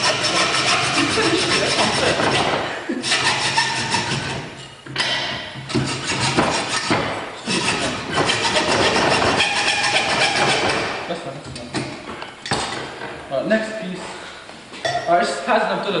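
Hacksaw cutting through a metal box-section bar clamped in a bench vise: loud scraping strokes in long runs, with short breaks about three, five and eight seconds in, growing quieter after about eleven seconds.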